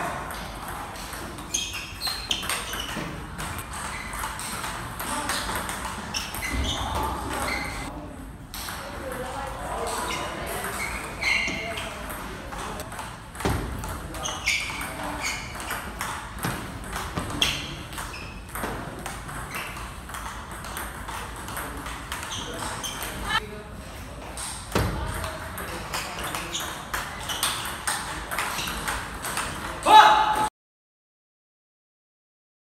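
Table tennis rallies: the celluloid ball clicking off the rackets and bouncing on the table in a quick string of sharp ticks, with brief breaks between points, in a reverberant hall.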